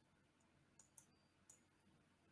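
Three faint, short computer-mouse clicks within about a second, against near silence.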